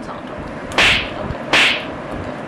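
Two sharp, whip-like hits a little under a second apart, each with a brief hissing tail.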